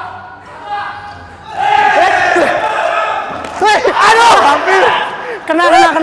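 Players shouting and calling out across a reverberant indoor court, with a long drawn-out call about two seconds in. Over the voices come a few knocks of a dodgeball bouncing on the court floor.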